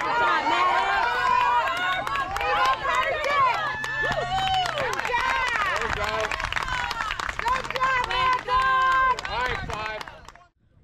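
Spectators and players at a youth baseball game yelling and cheering during a play on the bases: many excited voices shouting over one another, loud throughout.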